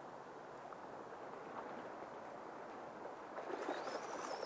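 Faint, steady rush of a shallow river's current over gravel, with splashing near the end as a hooked steelhead thrashes at the water's edge.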